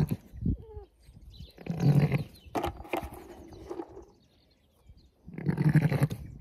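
Zwartbles sheep bleating three times, a few seconds apart, with a couple of sharp clicks in between.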